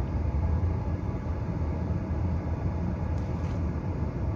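Steady low rumble of a car heard from inside its cabin, with the engine running.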